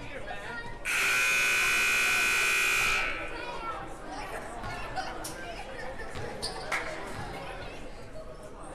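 Gymnasium scoreboard horn sounding one steady buzz for about two seconds, then cutting off suddenly, signalling the end of a timeout. Crowd chatter and a few sharp knocks follow.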